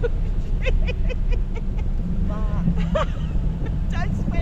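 Steady low rumble of a motorboat's engine and wind across the microphone as the boat tows a parasail, with short bursts of people's voices over it.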